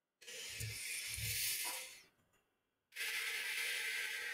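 A person breathing close to the microphone: two slow, hissing breaths of about two seconds each, with a short silence between them.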